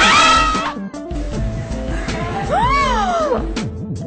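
Background music, with two high-pitched squeals of astonishment from spectators reacting to a magic trick: one at the start, and a second about two and a half seconds in that rises and then falls in pitch.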